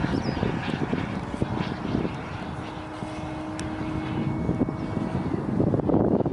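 Jet aircraft flying overhead: a steady, noisy engine sound with a faint whine in it. It eases slightly in the middle and grows again near the end of the pass.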